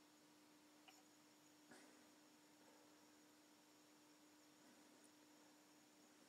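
Near silence: room tone with a faint steady hum and two faint ticks, one about a second in and one nearly two seconds in.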